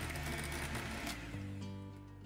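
Electric hand mixer running, its wire beaters whirring through curd-cheese cake batter; the whirr fades out about halfway through. Soft background music with held notes plays underneath.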